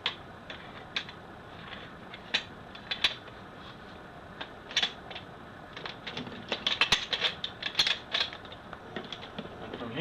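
Metal parts of a Turkish-made pump-action shotgun clicking and rattling as the fore end and bolt assembly is wiggled onto the receiver. There are a few single clicks at first, then a quick run of clicks and rattles starting about six seconds in.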